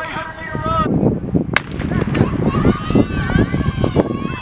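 A single sharp crack a second and a half in, the starting signal for a sprint race. It is followed by a busy mix of spectators' voices and outdoor noise as the runners get away.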